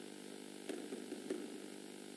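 A steady, faint electrical hum, made up of several even tones, from the chamber's microphone and sound system. A brief, faint murmur of voice comes about a second in.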